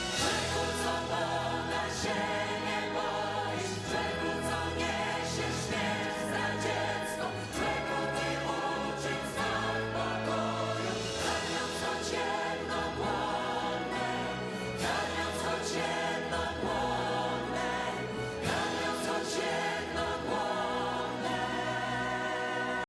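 A choir singing with a symphony orchestra, long held chords over sustained low bass notes that change every few seconds.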